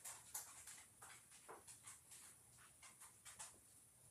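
Faint swishes of a paintbrush stroking metallic sealer over a plastic egg, short irregular strokes two or three a second.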